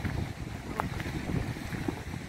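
Wind buffeting a phone's microphone, a steady low rumbling noise.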